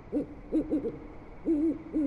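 An owl hooting: a quick run of short hoots that rise and fall in pitch, then two more about halfway through, over a faint steady high tone of night-time ambience.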